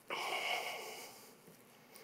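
A man breathing out audibly, one breathy exhale that starts just after the beginning and fades away over about a second.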